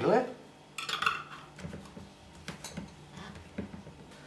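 A metal twist-off lid set on a glass jar and screwed down tight by hand: a series of small clinks and scraping clicks of metal on glass.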